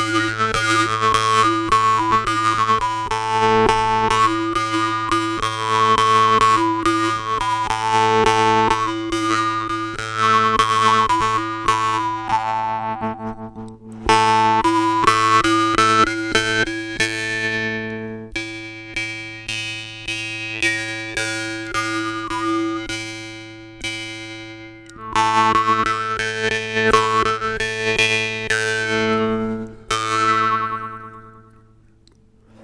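Dmitry Babayev budget jaw harp (vargan), its frame bent from rod, played melodically: rapid plucks of the tongue over a steady low drone, with the mouth picking out a tune in shifting overtones. The playing drops away briefly a few times between phrases and picks up again.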